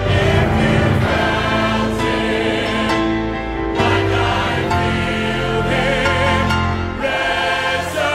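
Large mixed church choir singing a gospel song with accompaniment, in long held chords.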